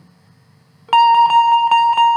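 Indian banjo (bulbul tarang), a keyed plucked-string zither, silent for almost a second and then picked in a fast tremolo on one high note, about seven strokes a second. The note is the upper-octave Ga (taar saptak Ga) that opens the melody.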